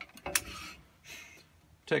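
Wooden pen-blank clamp blocks being handled on a metal drill-press vise: one sharp click about a third of a second in, then brief faint rustling as the blocks are moved.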